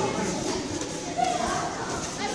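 Children's voices and chatter, with one short sharp thump a little over a second in.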